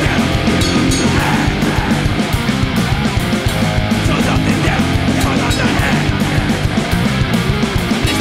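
Thrash metal punk band playing loud, with distorted electric guitars over a fast, steady beat.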